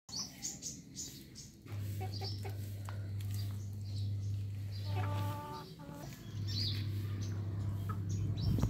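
Poultry in a yard: one short clucking call about five seconds in, with small birds chirping, over a low steady hum that breaks off for about a second near the middle.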